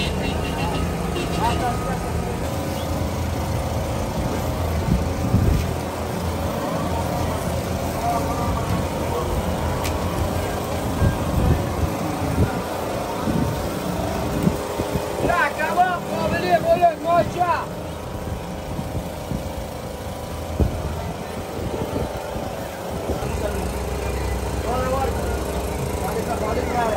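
Busy street ambience: a steady traffic rumble with voices of passers-by, one voice standing out about sixteen seconds in.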